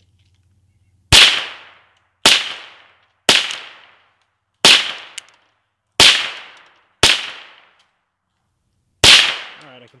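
.22 rifle fired seven times, about a second apart with a longer pause before the last shot. Each sharp crack trails off in a short echo.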